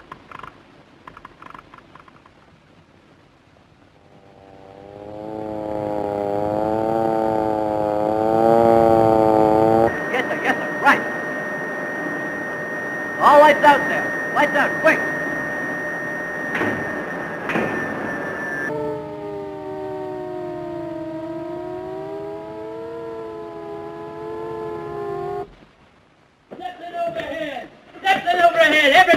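Air-raid alarm: a wavering siren wail builds up, then a steady high whistle joins it along with brief shouted orders, and then several siren tones glide up and down over each other before cutting off suddenly.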